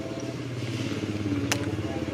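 Small motorcycle engine running steadily and growing slightly louder, with one sharp click about one and a half seconds in.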